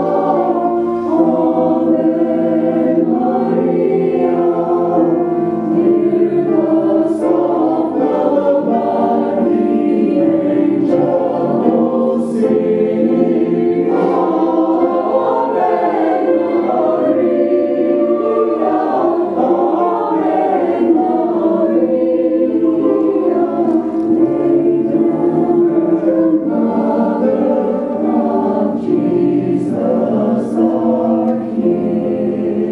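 Mixed choir of men's and women's voices singing a slow piece in sustained chords.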